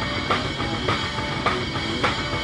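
Rock song played on a drum kit, with a hard hit on the beat about every 0.6 s over a dense, steady wash of cymbals and band sound.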